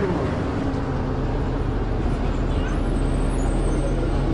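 Inside a moving city bus: a steady low engine hum and road rumble, with faint passenger chatter in the background.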